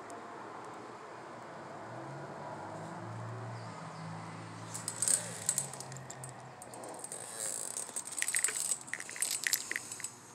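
Light clinks and rattles of small hard objects being handled, scattered through the second half, with a faint low hum in the first half.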